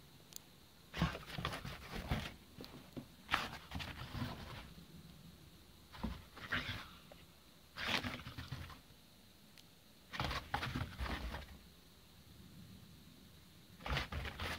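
A pit bull spinning circles in shallow snow, heard as five rough bursts of sound a second or so long, a couple of seconds apart.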